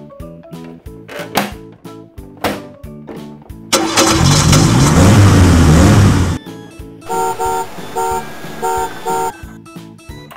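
Background music with a steady beat. About four seconds in, a loud vehicle-engine sound effect with rising and falling revs cuts in for about two and a half seconds, then stops suddenly.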